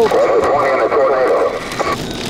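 A voice coming over a two-way radio in the car, garbled and narrow-sounding, for about the first second and a half.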